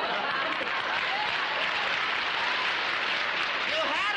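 Studio audience laughing and applauding, a steady crowd noise that holds at one level.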